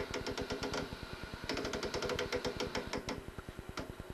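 Rapid clicking of an analog TV's channel tuning knob being turned through its detents, about ten clicks a second in two runs with a short pause between them, over the set's faint static hiss and a steady low buzz.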